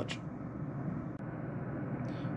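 Steady low background noise, a room hum with no distinct source, with one faint tick about a second in.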